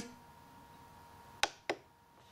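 Two sharp plastic clicks about a quarter second apart, near the end: a button on a RadioMaster TX16S radio transmitter being pressed to stop telemetry sensor discovery.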